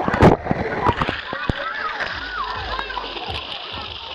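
Water splashing in a shallow wading pool, with the loudest splashes in the first half-second, over a steady wash of moving water. Children's voices run through the middle.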